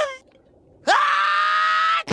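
A cartoon character's voice: a short cry falling in pitch, then, just under a second in, a long held scream that rises slightly and cuts off abruptly.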